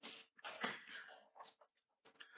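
A quiet pause in a lecture hall: faint room tone with a few soft, indistinct sounds, the loudest just after half a second in.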